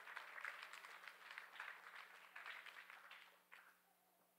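Faint applause from a congregation, a scatter of hand claps that dies away about three and a half seconds in.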